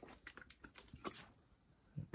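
Near silence, with a few faint small clicks and rustles in the first second or so.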